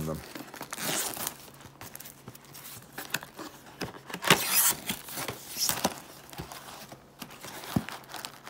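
Cellophane wrapper being torn and crinkled off a cardboard trading-card box, with the box's cardboard handled and opened: irregular rustling and crackling, loudest a little past the middle.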